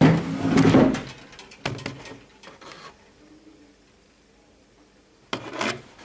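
Close handling noise against wooden furniture: a long scraping rub in the first second, a knock a little under two seconds in, and another short knock-and-scrape near the end.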